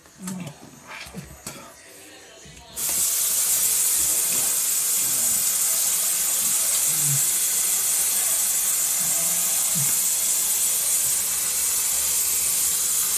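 A bathroom sink tap is turned on about three seconds in, and water then runs steadily into the basin with a loud hiss. Before it there are a few soft clicks.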